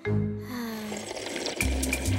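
Soft cartoon background music with held, slowly falling notes. About halfway through, a brief bubbly, liquid-like sound effect plays over it.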